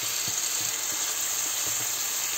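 Chopped peppers and onion sizzling steadily in oil in a stainless steel frying pan.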